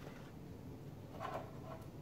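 Quiet room with faint handling sounds from a computer monitor being held and turned on a desk. There is one weak brief sound a little over a second in.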